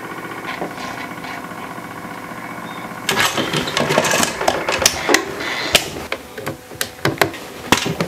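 Steady hum of the small electric motor that turns a homemade lure-drying drum. From about three seconds in comes a run of sharp clicks and knocks as the drum's switches and latches are worked and a freshly clear-coated lure is fitted in to cure.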